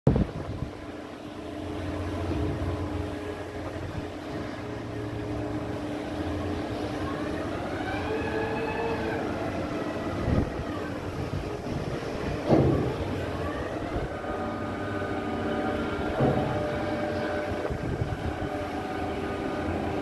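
Cargo-handling machinery on a ship during discharge running with a steady hum, a whine that rises and then falls in pitch about halfway through, and three sharp knocks in the second half.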